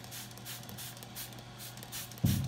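Plastic trigger spray bottle squirting fresh water in quick repeated squeezes, about four or five short hisses a second, rinsing the soapy wet-sanding residue off a varnished wooden model hull. A steady low hum runs underneath.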